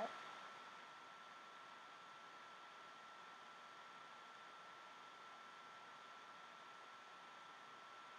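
Near silence: a faint steady hiss with a thin steady whine.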